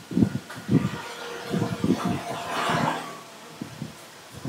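Indistinct voices of people praying aloud, with one voice held longer for about half a second near the middle.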